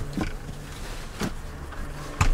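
A couple of light clicks and rustles from handling a deflated vinyl air mattress and its pump and plug, over a faint steady hum.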